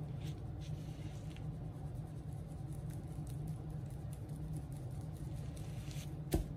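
Brisket rub shaken from a shaker and sprinkled onto a raw brisket, a faint scatter of light ticks, a few in the first second or so, over a steady low hum.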